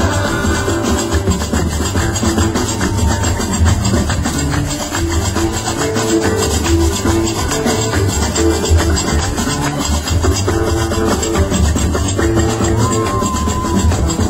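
Live Gnawa–jazz fusion: many qraqeb (iron castanets) clattering in a fast, steady rhythm over a deep bass line, with acoustic guitar and drum kit.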